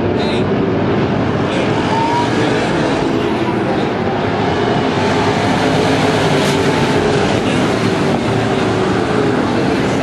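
A pack of IMCA dirt-track modified race cars running laps together, their engines a loud, steady drone.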